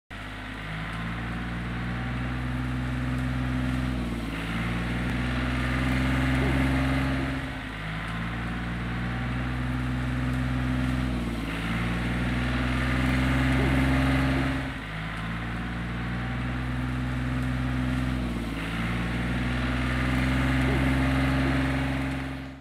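John Deere compact tractor engine running, its pitch dipping briefly every few seconds as it takes load and then recovering.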